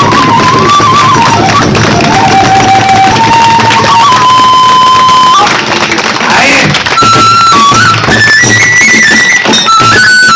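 Kagura stage music: a bamboo transverse flute plays a melody of long held notes that step up and down, over steady taiko drum strikes. The flute breaks off about halfway through and comes back higher.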